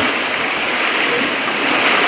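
Small waterfall pouring over rocks into a pond, a steady rushing noise.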